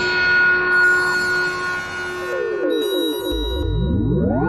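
Korg MS-20M analogue synthesizer module, patched and driven by a Korg SQ-1 step sequencer, playing sustained synth tones. About halfway through it turns to a quick run of falling pitch sweeps, about five a second. Near the end a deep bass note comes in under rising sweeps.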